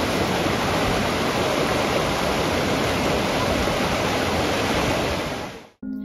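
River rapids: white water rushing steadily over boulders and rocks in shallow, fast-flowing water. The rush fades out near the end.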